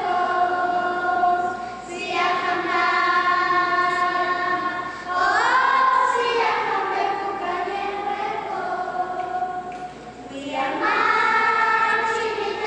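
Children's choir singing long, held notes in sustained phrases, with brief breaks between phrases about two seconds in and again about ten seconds in.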